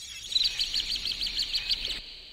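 A small bird chirping: a quick run of short, high chirps, about seven a second.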